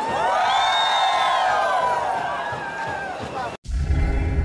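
A voice singing long, gliding held notes over crowd noise, cut off suddenly near the end. A deep, bass-heavy logo jingle follows at once.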